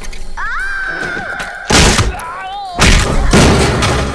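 Action-film sound effects: a long, high-pitched shriek, then a sudden loud crash not quite two seconds in. A brief wavering cry follows, then a second, longer loud crash about three seconds in.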